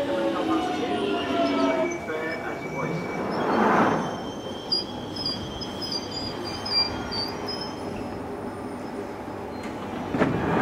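London Underground 1996 stock train braking to a stop. The whine of its GTO inverter traction drive falls in pitch as the train slows and fades out about two seconds in. Then comes a swell of hiss near four seconds, a couple of clicks and a faint high wheel or brake squeal as the train comes to a stand.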